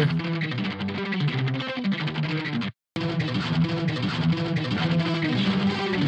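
Distorted electric guitar track through a Soldano amp, played back on its own: a fuzzy lower-octave layer of a fast riff. Playback cuts out briefly about three seconds in, then starts again.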